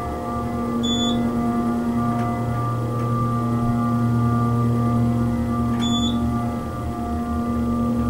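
Hydraulic elevator's pump motor running steadily as the car rises, a loud drone of several held tones. Two short high beeps come about five seconds apart as the car passes floors.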